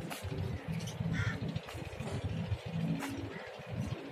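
A crow caws once, about a second in, over a continuous low rumble.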